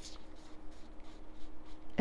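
A deck of tarot cards being shuffled and handled in the hands: soft, irregular rustling and light scraping of card against card, over a faint steady hum.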